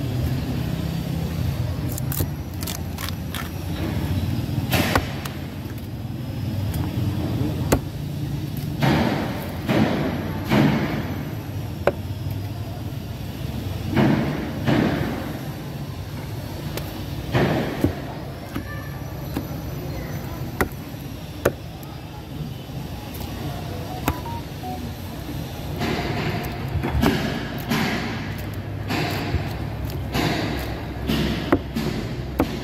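A large knife slicing and chopping through a tuna on a thick wooden chopping block, with sharp knocks of the blade against the wood at irregular intervals, several in quick succession near the end. A steady low rumble of background noise runs underneath.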